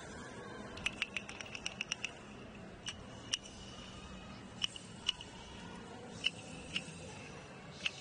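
Sharp short clicks over faint stadium background noise: a quick run of about eight clicks about a second in, then single clicks every second or so.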